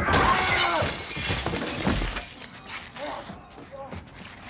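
A bus window's glass shattering as a body is smashed into it: a sudden crash right at the start, then glass fragments tinkling and trailing off over the next second or two.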